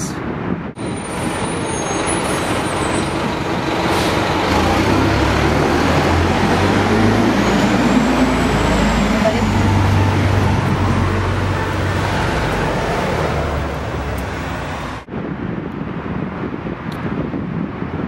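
Loud, dense noise of city traffic with a low rumble of heavy vehicles. It cuts in abruptly about a second in and cuts off sharply near the end, leaving quieter wind noise.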